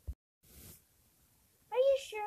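A short click at the start and a moment of dead silence at the video cut, then a brief high-pitched, squeaky voice near the end, a person putting on a falsetto character voice.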